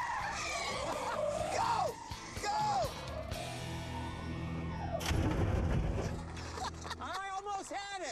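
Laughter over a background music bed, with car noise underneath and a sudden loud hit about five seconds in.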